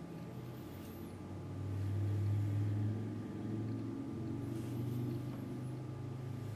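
Low steady hum with a few faint overtones, swelling about a second and a half in and then holding.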